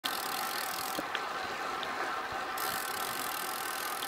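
Steady rushing noise with a few faint clicks, about a second in and again near two seconds.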